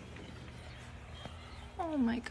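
A cat meowing once near the end, a single falling cry, over faint background hum.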